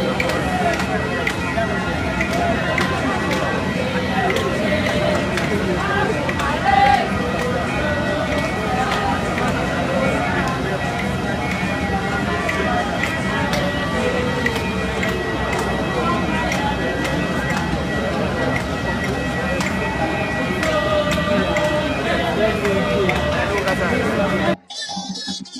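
Crowd of many voices talking at once, with a thin steady high whine throughout and a brief louder sound about seven seconds in.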